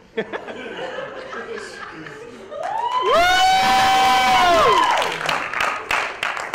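Audience laughing and reacting. About two and a half seconds in, a loud, high, wailing cry rises, holds for about two seconds and falls away, and clapping follows near the end.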